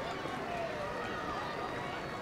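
A crowd of spectators talking and calling out at once, a steady hubbub of many voices with no single voice standing out.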